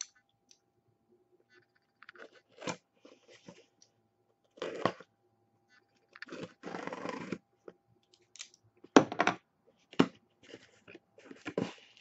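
A box and its packaging being opened by hand: scattered crinkling and scraping, a longer tearing rustle about six seconds in, and two sharp knocks near the end.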